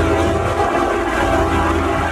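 A TV ident's soundtrack heavily distorted by editing effects: a loud, dense, steady roar with a deep rumble underneath.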